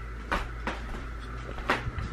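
A few short, soft scuffs or knocks, about four in two seconds, over a steady low hum.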